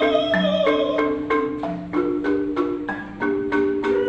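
An ensemble of chromatic balafons, wooden African xylophones, playing a tune in a steady beat of about three strokes a second, with several notes struck together. A held, wavering higher note sounds over them for the first second and a half.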